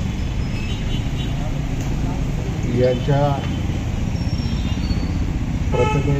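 Steady low rumble of outdoor street noise, with a man's voice speaking briefly into a microphone about three seconds in.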